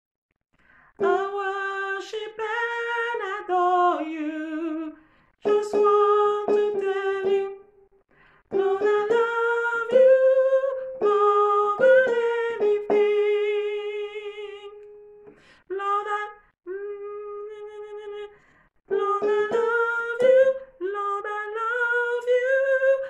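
A woman singing the soprano harmony line of a gospel worship song's vamp, in short phrases with brief breaks between them, her held notes wavering with vibrato.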